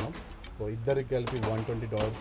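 Handgun shots at an indoor shooting range: several sharp cracks, the loudest about a second in, over a voice talking.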